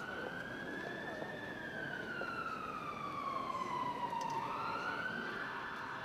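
Distant siren wailing over street noise, one long slow wail that rises, falls gradually and rises again near the end.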